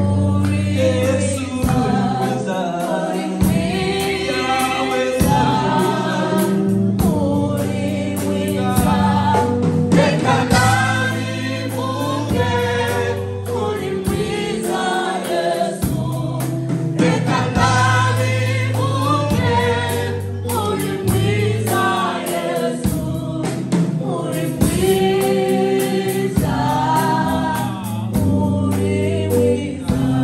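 Live gospel worship music: a woman leads the singing on a microphone with a small choir singing along, over a band with drums and sustained low bass notes.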